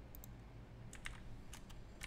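A few faint, scattered keystrokes on a computer keyboard as a word is typed.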